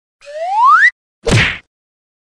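Intro logo sound effect: a rising whistle-like glide that swells in loudness for under a second, followed by a short, punchy hit.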